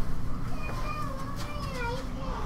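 High, wavering background calls whose pitch slides up and down, one drawn-out note after another through the second half.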